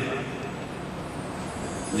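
A pause in a man's speech, filled by the steady background noise of a hall full of seated people.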